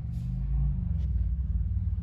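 Low, steady rumble of a car heard from inside its cabin, with the engine running.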